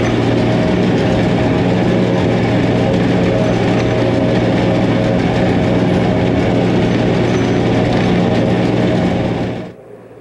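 A John Deere tractor and a pull-type forage harvester run steadily under load, picking up and chopping alfalfa and blowing it into a forage wagon. The result is a loud, even mechanical drone with a steady hum. It cuts off abruptly near the end.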